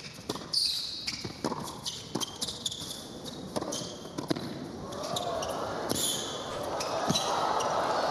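Indoor hard-court tennis rally: racquets striking the ball back and forth, with shoes squeaking on the court. The crowd noise swells from about halfway through as the point goes on.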